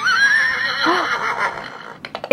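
Recorded horse whinny from a plush toy horse, set off by a touch: one wavering neigh that starts suddenly and fades over about two seconds.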